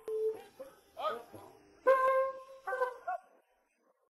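A man shouting military drill commands in long, drawn-out calls, with one held call about two seconds in as the loudest; the shouting stops shortly after three seconds.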